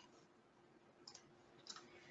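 Near silence: room tone, with two faint computer mouse clicks, one about a second in and one near the end.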